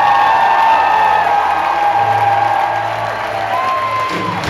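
Live symphony orchestra playing long held notes while the audience cheers and applauds.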